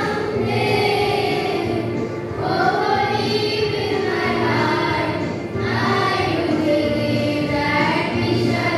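A group of girls singing together as a small choir, in long, held phrases, with short breaks about two and a half and five and a half seconds in.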